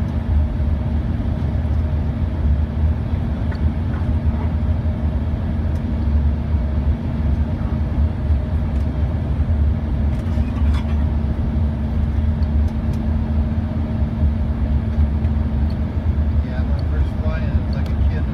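Cabin noise inside an Embraer ERJ 145 during descent: a steady, deep rumble of airflow and the rear-mounted Rolls-Royce AE 3007 turbofans, with a constant hum running underneath.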